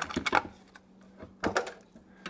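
Plastic wire tie being threaded and pulled through the wire grid of a suet cage feeder, giving a few separate sharp clicks, a couple early and a couple more about one and a half seconds in.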